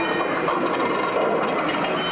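Street-scene sound effects from a dark ride's soundtrack: a steady, dense mix of early-1900s city traffic in which the clatter of a streetcar on its rails stands out.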